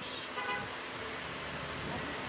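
Steady street traffic noise, with a faint, brief pitched sound about half a second in.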